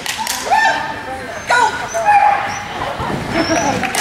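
A dog barking several times in short calls, about a second apart, over people's voices in the background.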